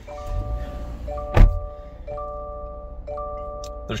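A 2020 Subaru Outback's 2.5-litre flat-four engine started with the push button: a low rumble begins just after the start and settles into idle. There is one sharp thump about a second and a half in. Over it, a multi-tone dashboard warning chime repeats about once a second, four times.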